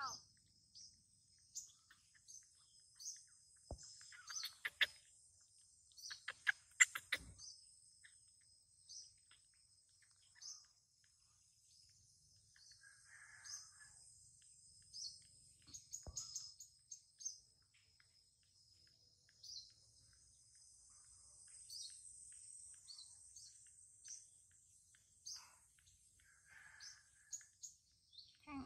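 Faint outdoor ambience: short high bird chirps repeating every second or so over a steady high-pitched insect drone. A few sharp clicks come a few seconds in.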